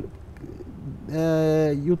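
A short pause, then a man's voice holding one long, steady vowel for nearly a second before the talk resumes.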